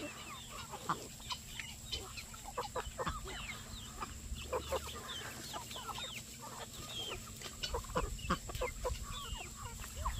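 A flock of chickens clucking, with many short calls overlapping one another.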